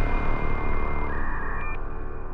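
Electronic closing theme music with held synthesizer tones over a steady low pulse, dying away. A high shimmer cuts off near the end.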